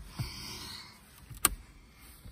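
A single sharp click about one and a half seconds in, after a soft breathy hiss near the start.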